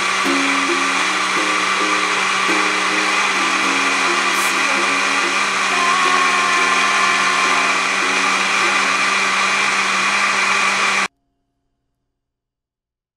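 Countertop blender running steadily at high speed, blending a smoothie, with a light melody underneath. The sound cuts off suddenly near the end.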